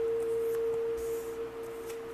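A single steady sustained tone, a background drone like a tuning fork or singing bowl, held throughout. Faint soft rustles of tarot cards being laid on a cloth sound under it.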